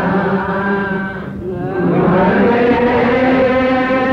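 Ethiopian menzuma, Islamic devotional chanting: the voice holds long, level notes, breaks off briefly about a second and a half in, then carries on.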